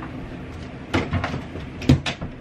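A few short knocks, the loudest one near the end, over a steady low hum.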